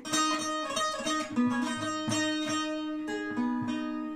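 Bağlama (long-necked Turkish saz) playing an instrumental phrase: a quick run of plucked melody notes over a steady ringing drone, the last notes left to fade away near the end.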